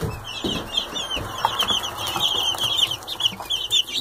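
A brood of Barred Rock chicks peeping continuously, many short high chirps overlapping one another.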